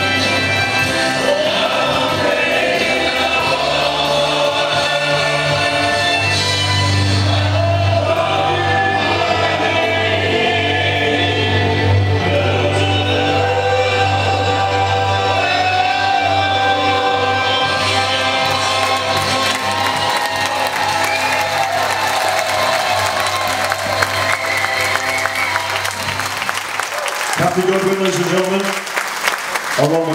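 A vocal duet sung over backing music in a slow ballad style with a steady bass. Applause starts to build about two-thirds of the way in, and near the end the music stops, leaving clapping and voices.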